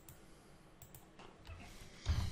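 A few faint computer mouse clicks over near silence: one at the start and a quick pair a little before the end.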